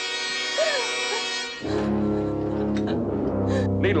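Dramatic orchestral score: a loud, held high chord with a woman's brief cry over it, giving way under two seconds in to a low, sustained brass chord.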